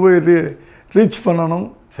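A man speaking Tamil in two short phrases, with a brief pause about halfway through.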